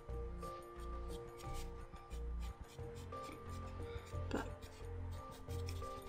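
Palomino Blackwing 602 graphite pencil scratching in short back-and-forth strokes as it shades a swatch on sketchbook paper, faint under steady background music.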